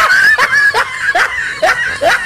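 A person laughing hard in a rapid run of short, rising bursts, about two or three a second.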